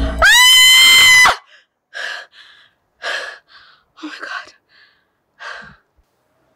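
A loud, high-pitched squeal, held steady for about a second, cuts in as the music stops. It is followed by four heavy, gasping breaths of exertion, spaced about a second apart.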